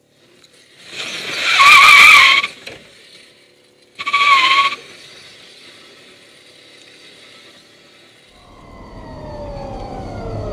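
Car tyres squealing loudly twice, first about a second in for over a second, then more briefly about four seconds in. Near the end a low rumble builds with a whine sliding down in pitch as the electric car moves.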